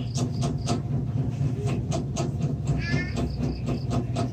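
Colored pencil scratching on paper in quick, repeated shading strokes over a steady low hum. A brief high-pitched call sounds about three seconds in.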